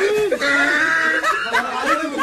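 People laughing and exclaiming, with one drawn-out vocal exclamation about half a second in.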